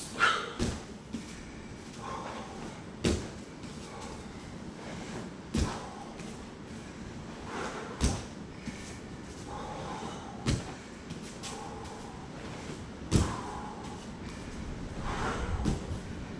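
Bare feet landing on foam martial-arts mats during standing long jumps: a thud about every two and a half seconds as the jumper lands each jump back and forth.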